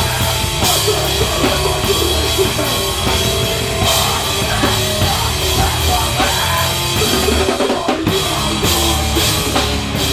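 Heavy hardcore band playing live: distorted electric guitar, bass guitar and pounding drum kit, with a short break just before eight seconds in before the band comes back in.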